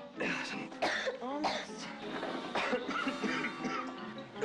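Women coughing repeatedly over a background music score.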